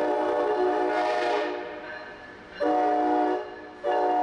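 Amtrak ACS-64 electric locomotive's multi-chime air horn sounding a chord. One blast fades out about a second and a half in, a short blast follows near the middle, and another begins just before the end.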